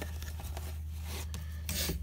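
A camera lens being pushed down into a soft drawstring lens pouch: cloth and leatherette rubbing and rustling against the lens barrel, with a few small ticks, busier near the end.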